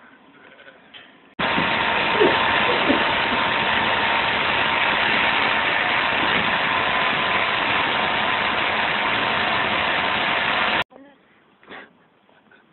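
Electric sheep-shearing handpiece running steadily for crutching, a loud even buzz that starts abruptly about a second and a half in and cuts off near the end.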